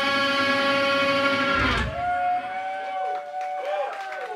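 A heavy metal band's final chord ringing out on distorted electric guitars, held steady, then cut off about two seconds in with a last low hit. After the cut a single quieter wavering tone lingers.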